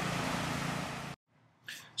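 Steady outdoor background noise, an even hiss with no distinct events, fading slightly before cutting off abruptly to silence about a second in.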